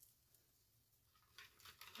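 Near silence, with a few faint rustles and clicks in the second half from deco mesh ribbon being pinched and pressed into a Bowdabra bow maker.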